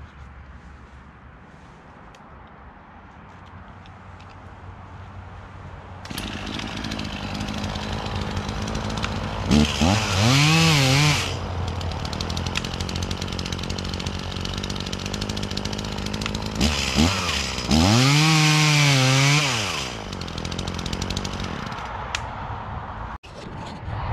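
Echo CS-450P two-stroke chainsaw running steadily at idle, louder from about six seconds in. It is revved up to high speed twice, about ten seconds in and again around seventeen seconds, each time for two or three seconds, before dropping back to idle.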